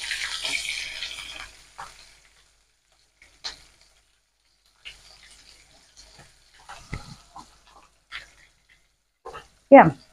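Stuffed brinjals frying in oil in a non-stick kadai: a sizzle that is loudest for the first couple of seconds and then dies down, followed by scattered light scrapes and taps of a wooden spatula turning them in the pan.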